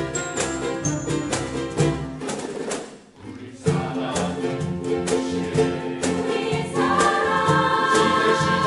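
A ukulele ensemble playing with glockenspiel and bass. The music drops away briefly about three seconds in, then the full ensemble comes back in.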